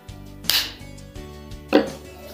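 Two short, sharp plastic knocks from a hand-sanitiser bottle being handled as its flip-top cap is closed, the second, about three-quarters of the way through, the louder. Steady background music plays underneath.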